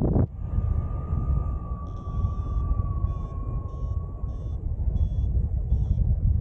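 Airflow rushing over the microphone of a paraglider in flight, a steady low rumble. Over it a thin steady tone sounds for about four seconds, sinking slightly in pitch, and from about two seconds in a run of short high beeps.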